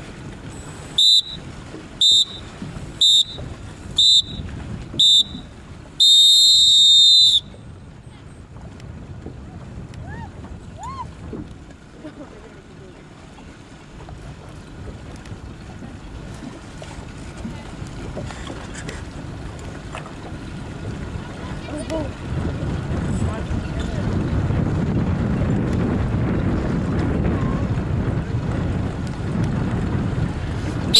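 Electronic race-start signal counting down: five short high beeps a second apart, then one long beep of about a second and a half marking the start. After it, wind and water noise that grows louder in the last third.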